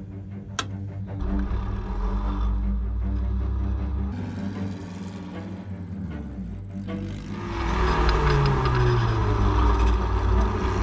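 Background music over the sound of a Spec Racer Ford's 1.9-litre engine: a sharp click of a cockpit switch about half a second in, a low engine rumble for a few seconds, then from about three-quarters through the car running on track with wind noise, its engine pitch falling.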